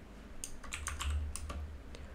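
Computer keyboard typing: a quick run of about eight keystrokes, including the Caps Lock key, from about half a second in to the middle.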